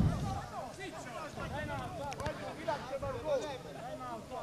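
Several distant voices talking and calling out over one another, with a short sharp knock about two seconds in.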